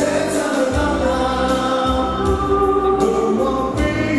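Live 80s rock music from a band playing electric guitar and keytar synthesizer, with long held, chord-like sung or synth notes over a low bass line.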